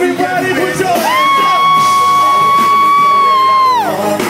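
Live hip-hop band playing with rapping, then about a second in a loud, high-pitched scream from a fan close to the microphone. The scream is held steady for nearly three seconds and falls away at the end.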